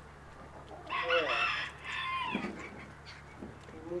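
A rooster crowing once, starting about a second in and lasting about a second and a half.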